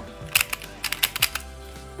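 Plastic novelty Pyraminx twisted quickly by hand: a rapid run of sharp clicks and clacks from the turning pieces, bunched between about a third of a second and just past a second in.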